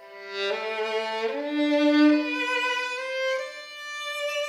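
Solo violin playing a slow melody in a few long bowed notes, changing note about half a second, one and a quarter, and three and a quarter seconds in. It is loudest on the held note about two seconds in.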